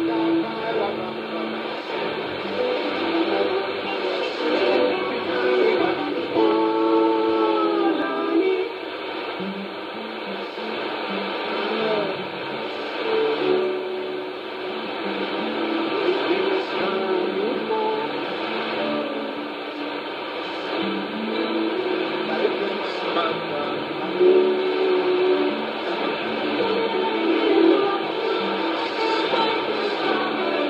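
Distant shortwave AM broadcast playing through a Trio R-1000 communications receiver: music with singing, thin and cut off above the voice range, over a steady hiss and faint steady whistle tones.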